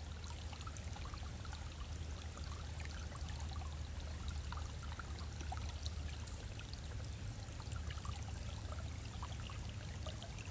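Shallow rocky creek trickling over stones: a steady babble of running water full of small splashes and gurgles, with a low steady rumble underneath.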